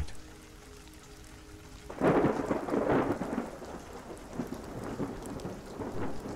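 Thunder with rain: a faint low drone, then a sudden peal about two seconds in that rolls on and slowly fades.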